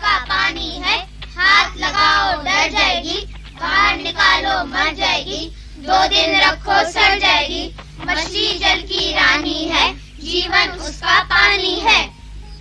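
A child singing in short phrases, each about a second long with brief breaks, over a faint steady low hum.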